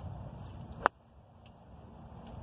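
A golf iron striking the ball, one sharp crisp click just under a second in. The strike is called a little thin, and the shot is pulled.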